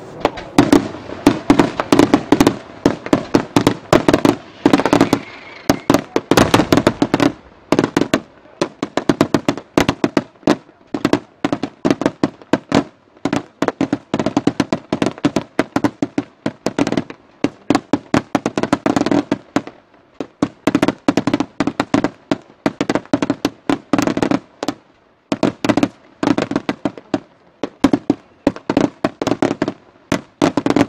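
Daytime fireworks display: aerial shells bursting in coloured smoke, with rapid loud bangs going off several a second in volleys, broken by a few short lulls.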